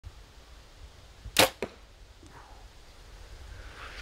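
Compound bow shot from full draw: a single sharp crack of the string releasing about a second and a half in, followed a fraction of a second later by a second, fainter knock.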